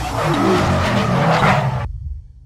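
Car tyre squeal sound effect of a burnout, a screeching hiss over a low engine rumble, that cuts off suddenly near the end.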